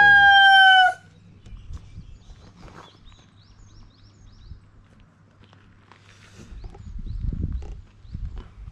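A rooster crowing: the long held final note of its crow falls slightly and ends about a second in. Afterwards it is quieter, with a short run of faint high chirps and a low rumble swelling near the end.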